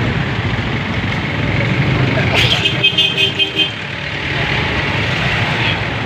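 Street traffic with a steady rumble of passing engines. About two and a half seconds in, a vehicle horn gives about five quick short beeps.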